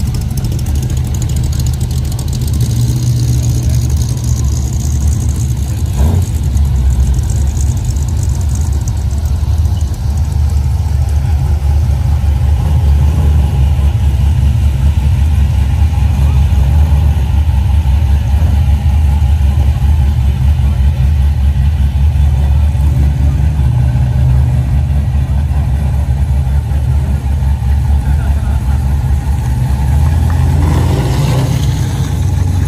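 Muscle car engines idling and rumbling low as the cars roll off slowly one after another, loud and steady, getting a little louder in the second half.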